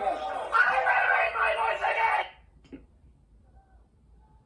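People talking, cut off suddenly a little over halfway through, leaving near silence.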